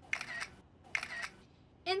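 Two smartphone camera shutter clicks, a little under a second apart, as photos are snapped.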